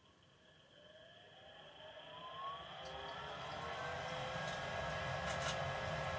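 Draft inducer fan of a Lennox SLP98UHV variable-capacity gas furnace starting on a call for heat: a rising whine that grows steadily louder as the motor spins up, then holds at low speed. There are a few light clicks in the second half.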